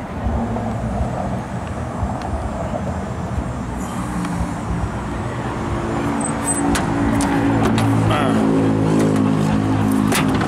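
A motor vehicle engine running, growing steadily louder through the second half, with a few light clicks near the end.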